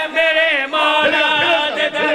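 A man's voice chanting a devotional verse in melodic majlis recitation, with long, wavering held notes.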